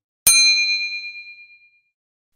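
A single ding sound effect: one bright, bell-like strike about a quarter second in, ringing on and fading away over about a second and a half.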